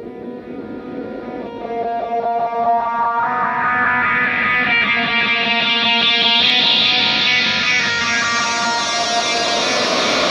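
Guitar intro to a deathcore/djent track: picked, ringing notes that steadily build, growing louder and fuller as more layers join about two and three seconds in.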